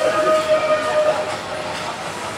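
A vintage train pulling out of the station, with a steady whistle-like tone that stops about a second in, over the running noise of the carriages.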